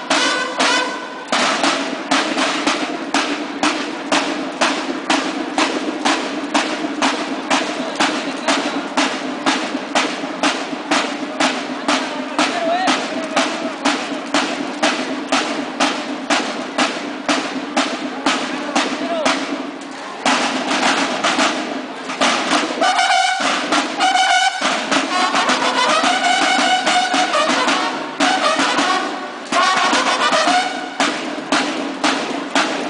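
Banda de guerra playing a march: snare drums beating a steady, even rhythm under held bugle notes. The drumming breaks off twice briefly a little past twenty seconds, and the bugles then sound a call over the drums near the end.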